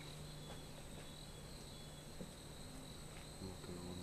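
Forest insects, crickets or similar, calling in a steady, continuous high-pitched trill, faint, with a few scattered soft clicks.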